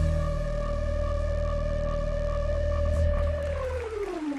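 Synthpop ending on one long held synthesizer note over a low bass drone. The note slides down in pitch near the end as the song finishes.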